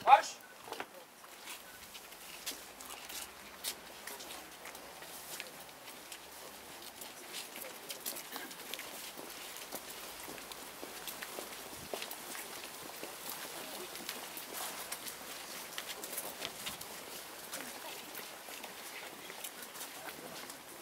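Footsteps of a procession on paving stones: soldiers' boots marching past, then people walking, heard as scattered clicks and scuffs over a low murmur of voices.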